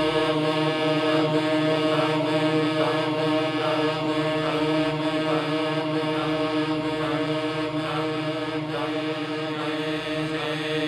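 Ambient soundtrack music: a dense, sustained drone of layered chant-like voices, easing a little in loudness toward the end.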